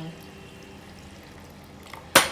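Hot water being poured from a steel bowl into the steel strainer of a glass teapot, a faint steady trickle.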